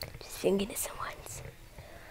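A young person's voice, close to a headset mic: a short spoken word, loudest about half a second in, mixed with breathy, whispery mouth noises that fade out after about a second and a half.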